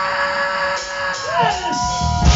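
Live rock band on stage holding one steady note, which bends up to a higher note about one and a half seconds in, with crowd noise underneath.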